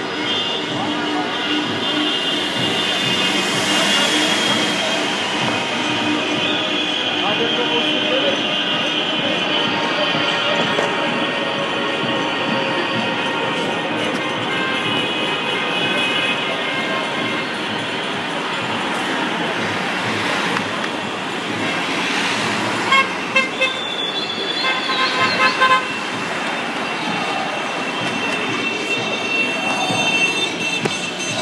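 Many car horns sounding at once in slow street traffic, some held long and others tooted, over voices and traffic noise. About three-quarters of the way through, a quick run of short repeated honks stands out.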